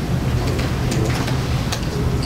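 A steady low hum or rumble of room and microphone noise, with a few faint clicks of keys being typed on a laptop keyboard.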